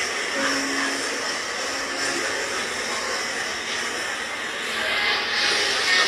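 Steady rushing hiss of a church-service recording played back through a phone's speaker, with two faint short held tones in the first two seconds.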